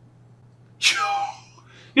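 A single short, sharp vocal burst of breath from a person about a second in, starting suddenly and fading within half a second.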